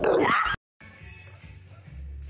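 A pit bull-type dog gives one loud bark at the very start, cut off abruptly after about half a second. Background music follows.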